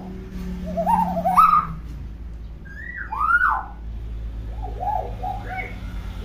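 Common hill myna calling in whistles: a wavering rising whistle about a second in, a loud arched whistle around three seconds in, then a quick run of short rising-and-falling notes near the end.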